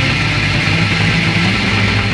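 Loud early-1970s rock music played from a vinyl LP: electric guitar and bass sustaining a dense, steady passage.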